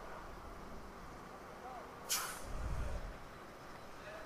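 A short, sharp hiss of compressed air about two seconds in, from a filling-station tyre inflator at a motorcycle's front tyre valve while the tyre pressure is being set. A low rumble follows for about half a second.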